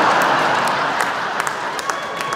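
Comedy club audience applauding in response to a punchline, a dense wash of clapping that slowly dies down.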